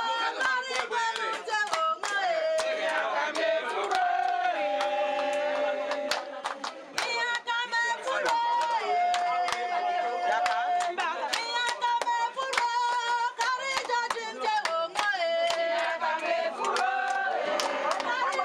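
A group of women singing a song together with rhythmic hand clapping, the sung notes held long between sharp claps.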